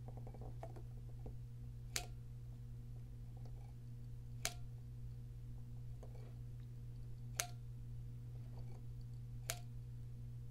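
Push-button ink converter of a Pilot Namiki fountain pen clicking as its button is pressed to draw ink from the bottle, four separate clicks a few seconds apart, over a low steady hum.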